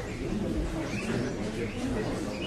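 Birds chirping in short scattered calls over a low murmur of voices.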